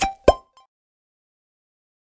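Short electronic sound-effect sting: two quick pitched blips, the second sliding upward, within the first half second, then dead silence.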